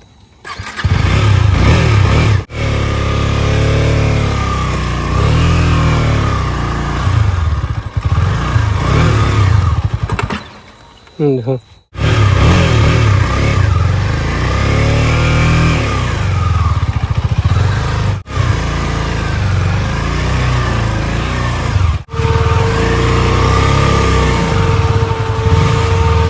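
KTM Duke 250 single-cylinder engine running as the bike is ridden over rough ground, its revs rising and falling, with a few abrupt breaks. A steady whine joins in for the last few seconds. The owner says this bike has been running, but not running well.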